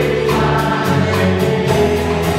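Live worship band playing a song: voices singing over strummed acoustic guitars and a drum kit keeping a steady beat.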